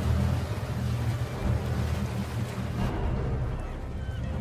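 A ship's engine running with a steady low rumble, over the wash of sea water.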